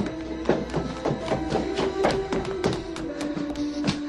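Quick footsteps on wooden stairs, about four or five steps a second, over film score music holding a sustained note.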